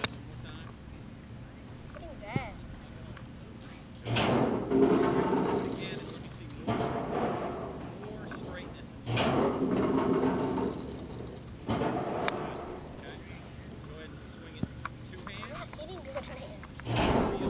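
A golf club strikes a range ball once at the very start: a single sharp click. After that, people's voices come and go in several stretches and are the loudest thing heard.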